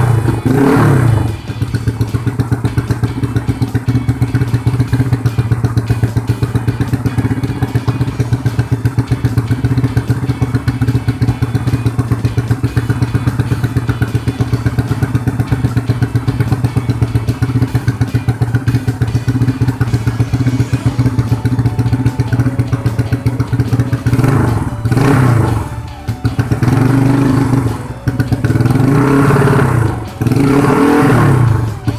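Freshly rebuilt Honda Astrea four-stroke single-cylinder engine, stroked to 67.9 mm with a 52.4 mm piston, idling evenly with short throttle blips at the start and twice near the end. It runs noisily, a noise the builders traced to a loose balancer nut.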